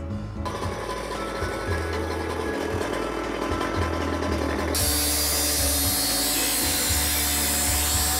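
Gas-powered cut-off saw with an abrasive blade grinding into a steel water heater tank, a loud hissing grind that starts about halfway through. Background music with a steady bass beat plays throughout.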